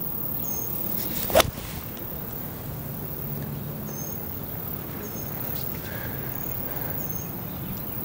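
Nine iron striking a golf ball: one sharp click about a second and a half in. Short, faint, high bird chirps recur over quiet outdoor background.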